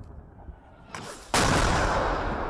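Mortar shells exploding: the rumble of one blast dying away, a sharper crack about a second in, then a much louder, closer blast just after whose noise carries on.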